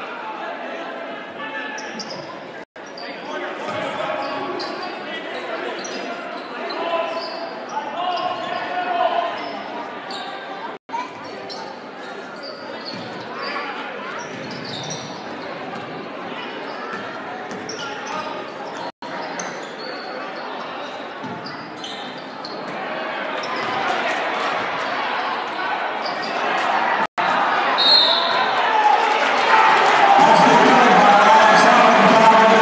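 Basketball game in a reverberant gymnasium: the ball bouncing on the court under the chatter and calls of the crowd, which grows louder over the last few seconds. The sound drops out for an instant four times.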